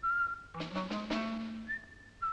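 Television theme music: a held high whistled note, then about halfway through a burst of struck, ringing tuned-percussion notes over a low held note, ending on another high whistled note.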